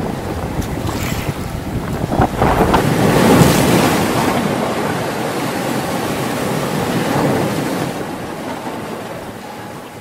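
Wind buffeting the microphone over small waves lapping on a lakeshore, with a couple of brief knocks in the first seconds. The wind rumble is heaviest in the first half and eases toward the end.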